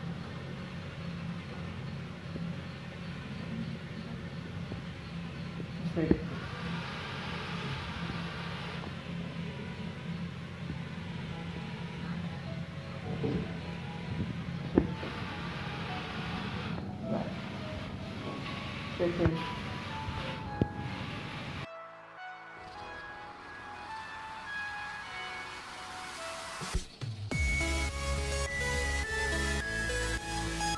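Small geared DC motors of a six-wheeled rocker-bogie robot car driving across a tiled floor: a steady whir with a few sharp knocks. About three-quarters of the way in it cuts off and electronic music comes in, louder near the end.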